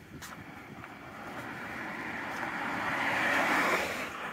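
A car passing on the road close by: tyre and road noise builds steadily for a couple of seconds, then drops away suddenly near the end.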